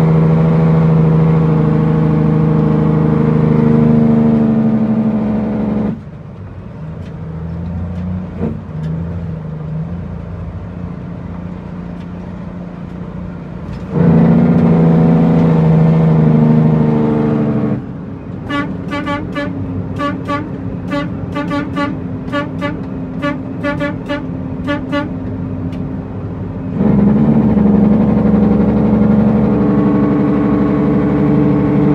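Heavy truck's diesel engine heard from inside the cab, a steady low drone that drops abruptly to a quieter sound several times and comes back. Through the middle stretch a quick, regular electronic beat plays over it.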